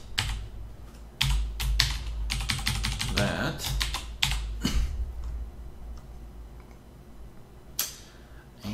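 Typing on a computer keyboard: a quick run of keystrokes from about a second in until about five seconds in, then one more click near the end.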